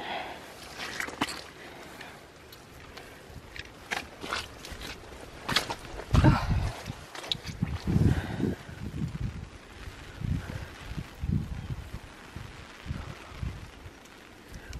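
Footsteps of rubber boots walking over wet, muddy clay ground: light scuffs at first, then from about halfway a run of low, heavier thuds, roughly one step a second.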